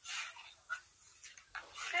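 A soft breath out from a woman pausing between sentences, then a quiet breath in just before she speaks again.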